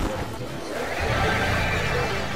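Layered, distorted logo music and sound effects piled on top of one another, with a steady low drone coming in about halfway through.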